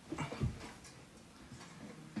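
Handling noise from a phone being moved and set in place: a cluster of knocks and rubbing with one low thud about half a second in, then a few faint ticks.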